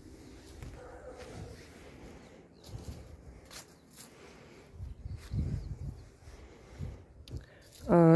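Footsteps on grass and soil: a few soft, low thuds, most of them in the second half.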